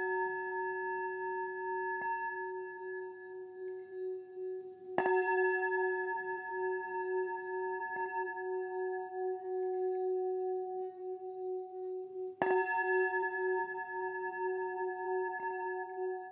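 A singing bowl ringing with a long sustain and a slow wobble in its tone. It is struck firmly twice, about a third of the way in and again about three quarters in, with lighter strikes in between that keep it sounding.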